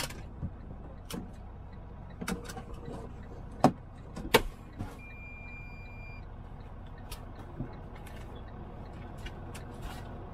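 Semi-truck running at highway speed, heard from inside the cab as a steady low engine and road rumble. It is broken by irregular sharp clicks and knocks in the cab, the two loudest a little before the middle, and by a single high beep lasting about a second.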